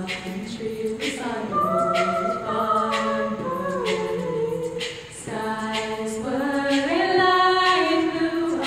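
Women's a cappella group singing held chords in close harmony, the chord moving every second or two and swelling louder near the end. A soft tick sounds roughly once a second under the voices.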